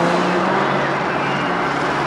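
Car engines running with a steady drone under dense street traffic noise.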